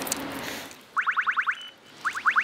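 Shared rental electric scooter's alarm: a quick run of six rising chirps, a short steady beep, then the chirps start again. The alarm goes off as the parked, locked scooter is lifted and moved. Some handling noise comes before it.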